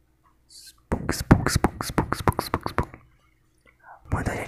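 Close-miked ASMR mouth sounds: a fast run of sharp tongue-and-lip clicks lasting about two seconds, starting about a second in, after a faint whispered hiss.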